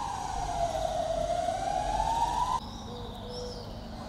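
Emergency vehicle siren wailing, its single tone slowly falling in pitch and then rising again, cut off abruptly about two and a half seconds in. A quieter background follows, with a faint steady hum and a few short chirps.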